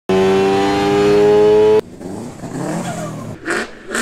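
Motorcycle engine held at high revs on a dynamometer: a loud steady note rising slightly in pitch, cut off abruptly after about two seconds. Then a quieter car engine note wavers up and down, with two short loud blips near the end.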